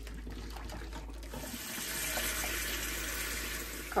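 Water poured off a saucepan of boiled eggs into a stainless steel sink, then a tap running steadily into the pan from about a second and a half in, filling it with cold water.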